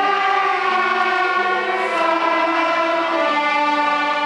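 A large ensemble of young violinists, with their teacher's violin among them, bowing a slow melody together in long, held notes that change about once a second.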